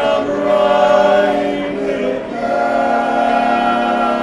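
A barbershop quartet singing a cappella in close four-part harmony, holding long sustained chords, moving to a new chord a little past halfway.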